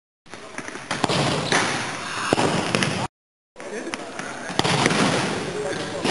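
A futsal ball being kicked and bouncing on a wooden sports-hall floor, its sharp knocks echoing in the large hall over a dense, noisy background. The sound cuts out at the start and again about three seconds in.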